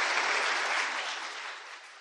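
Audience applauding, the clapping fading away over the last second.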